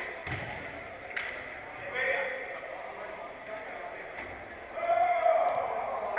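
Players' distant shouts and calls echoing around a large indoor football hall, louder about two seconds in and near the end. A few sharp knocks are heard early on, typical of the ball being kicked or striking the pitch boards.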